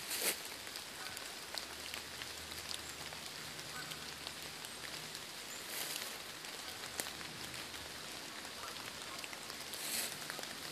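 Footsteps through dry fallen leaves: a steady crackling rustle with scattered crunches, the loudest just after the start and another around the middle.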